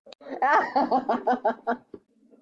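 A woman laughing close to the microphone, a quick run of 'ha' pulses about six a second, lasting about a second and a half.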